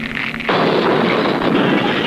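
Cartoon sound effect of a stick of dynamite exploding. About half a second in, a sudden loud blast sets off a long, even rush of noise that lasts well over a second, muffled like an old film soundtrack. Light background music plays before the blast.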